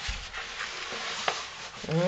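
Soft fabric rustling and rubbing as a toddler's backpack is slid off her shoulders, with a few faint clicks from the straps.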